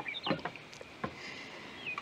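Water from a metal watering can splashing onto a window box of flowers in a few short splashes, with small high chirps among them.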